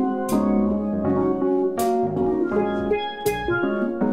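Live band playing an instrumental passage led by steel pans, with drums; a cymbal-like crash lands about every second and a half.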